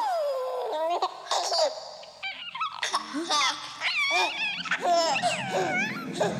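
High-pitched laughter in quick bursts that swoop up and down in pitch, with a low drone coming in underneath about halfway through.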